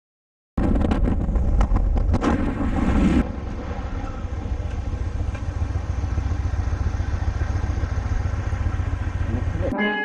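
Motorcycle engine with heavy wind rush at highway speed, cutting off abruptly about three seconds in. It is followed by the motorcycle's engine running steadily and more quietly while stopped at an intersection.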